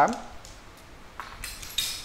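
Fishing rods clinking and clattering against each other and the tiled floor as a rod is laid back into the row, a few light clinks starting about a second in.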